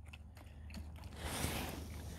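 Faint crunching of a dog drinking at a puddle of broken ice, with a soft rushing noise for about a second in the middle.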